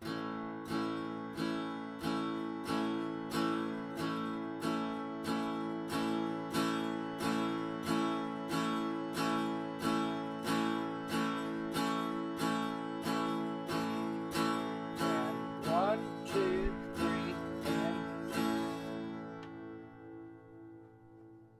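Guitar strumming an open A major chord in steady downstrokes, one strum per beat, about three strums every two seconds. The last strum rings out and fades shortly before the end.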